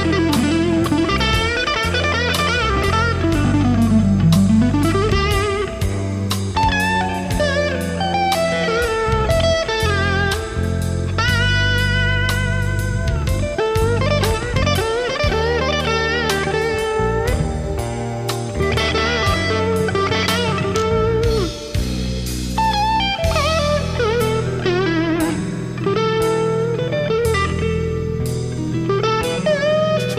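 Electric guitar lead on D'Addario NYXL nickel-wound strings, played over a backing track with a steady beat: fast runs, string bends with vibrato, and whammy-bar dives that swoop the pitch down and back up, the deepest a few seconds in and more near the end.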